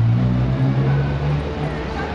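A vehicle engine running in street traffic: a steady low hum that fades out about a second and a half in, over general street noise.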